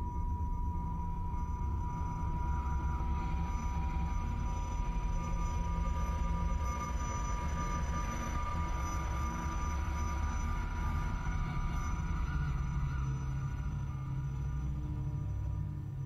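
Low droning ambient music: a dense low rumble under one steady high tone and fainter wavering tones, with no beat.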